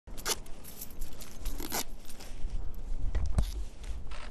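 Disposable protective coveralls rustling and crinkling as workers pull them on over their legs: a series of short crackly rustles over a low background rumble.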